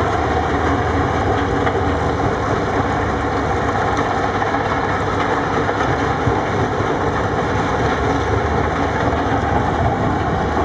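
Steady, loud din of heavy machinery at a rock-crushing site: a Caterpillar 980H wheel loader's diesel engine running while a mobile rock crusher and screening plant run alongside. No pauses or sharp impacts stand out.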